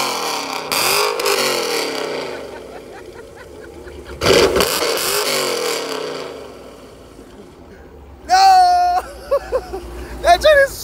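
Cammed 5.7-litre Hemi V8 in a Dodge Challenger, warm, being revved in sharp blips through its exhaust: one about a second in and a bigger one about four seconds in, each falling back to idle. A man laughs near the end.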